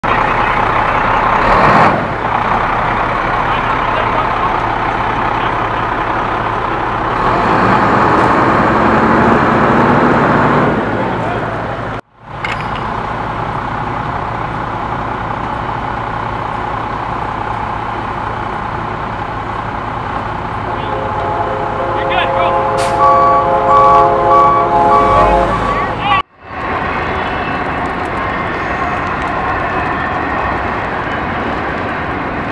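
Steady, loud vehicle engine noise at a roadside. A pitched whine joins it for a few seconds before the end. The sound cuts out briefly twice.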